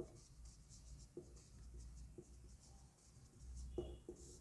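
Marker pen writing on a whiteboard, faint: light scratchy strokes with a few soft taps as the tip meets the board.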